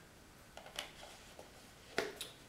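Small paperboard creamer carton being handled and closed, with a few soft crinkles and clicks, then a sharper knock at the very end as it is set down on the table.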